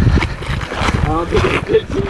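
Wind rumbling on the microphone, with a man's voice speaking briefly about a second in.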